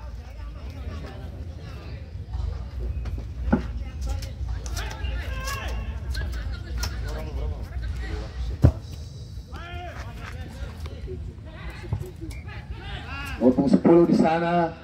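Background chatter and shouts of spectators and players around an open-air football pitch, with one sharp thump about two-thirds of the way in as the ball is struck for a free kick.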